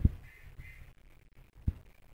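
Faint repeated cawing of a bird in the first half. Two sharp, dull low thumps are louder, one at the very start and one near the end.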